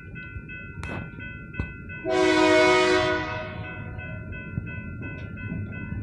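Diesel locomotive horn sounding one long blast about two seconds in, part of its crossing warning, over the steady ringing of a grade-crossing warning bell.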